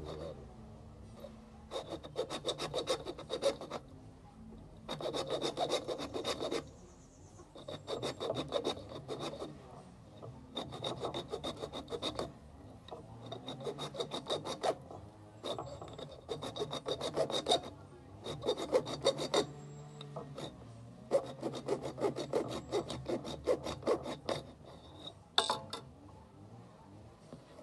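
A thin saw blade is drawn back and forth through the hard shell of a green calabash gourd, cutting a lid round its top. The rasping strokes come fast, in about ten short spells with brief pauses between, and there is a sharp click near the end.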